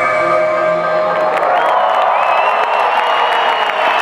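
A reggae band's final chord ringing out as the bass and drums stop. From about a second and a half in, a festival crowd cheers.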